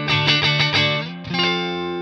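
Telecaster-style electric guitar on its neck pickup, played clean through a Vox AC15 valve amp: a quick run of picked notes, then a chord struck about a second in and left to ring out.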